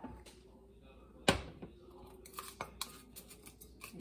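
Small kitchen handling sounds of a plastic bowl of shaved ice and a plastic spoon: one sharp knock just over a second in, then a run of light clicks and taps.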